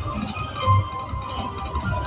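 Video slot machine playing its guitar-led game music while the reels spin, with a low beat under it.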